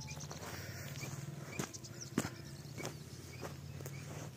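Footsteps of a person walking on a sandy, grassy riverbank, about one step every 0.6 s in the second half, over a low steady rumble.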